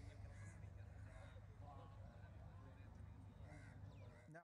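Near silence: faint background chatter over a low steady hum.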